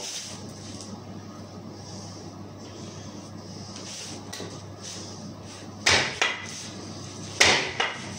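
A sharpened wooden stake, carved from a chair leg, is thrust into a board of wooden slats twice, about a second and a half apart, near the end. Each stab is a loud wooden impact followed by a smaller knock.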